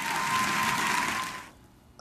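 A studio audience applauding, the clapping breaking off sharply about one and a half seconds in.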